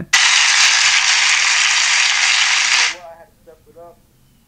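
Loud burst of applause, a sound effect that starts abruptly and cuts off sharply after about three seconds, played as a standing ovation. Faint voices follow near the end.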